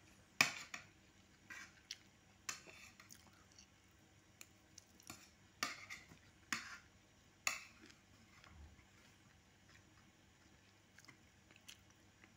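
Pencil scratching on paper in short strokes, with about six louder strokes in the first eight seconds and fainter ones after.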